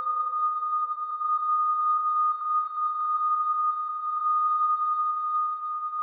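Doepfer A-100 eurorack modular synthesizer patch, played through a Make Noise Mimeophon, holding a single high steady tone with its loudness gently wavering. A fainter lower tone dies away in the first couple of seconds.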